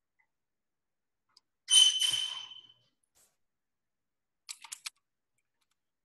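A sharp knock with a short ringing tone about two seconds in, then four quick computer keyboard keystrokes near the end, typing a short command.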